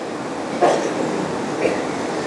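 Steady hiss-like room noise with no clear pitch, broken by a brief faint voice-like sound about half a second in.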